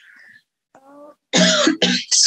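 A person clearing their throat: two short, loud throat-clears in the second half, after a faint brief hum.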